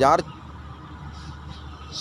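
A farm machine's engine running steadily in the background, heard as a low, even hum.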